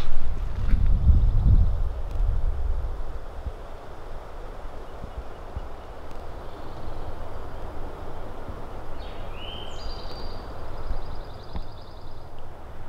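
Low wind rumble on the microphone for the first couple of seconds, then a steady hiss of outdoor ambience. Near the end a small bird gives a short rising whistle followed by a quick trill.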